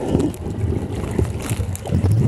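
Muffled, uneven rumbling and sloshing of water against a camera held underwater, with a few faint clicks.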